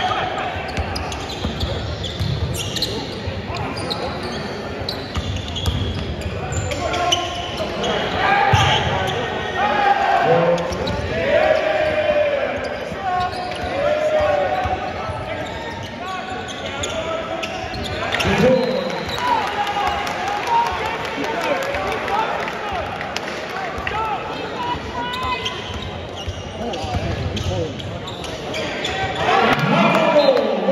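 Basketball being dribbled on a hardwood court, with repeated short bounces echoing in a large arena, mixed with scattered shouts and chatter from players and spectators.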